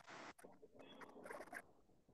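Near silence: faint, patchy background noise on a video-call line, with no clear source.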